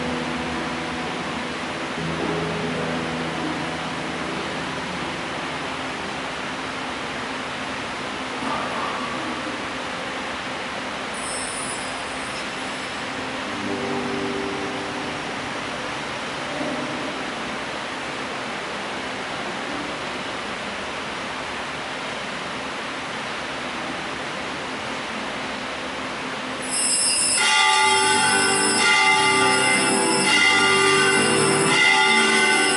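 Steady hiss with faint low humming tones. Near the end, a much louder held chord of many steady tones sets in and shifts every second or so.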